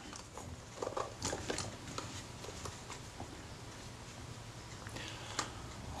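Faint handling noise from a Kodak Retina Reflex camera being turned over in the hands, with a few light taps and clicks about a second in and one more near the end.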